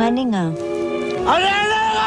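Film soundtrack: music over a steady drone, with a voice gliding down in pitch, then a long, high, wailing call that rises and falls, starting a little past halfway.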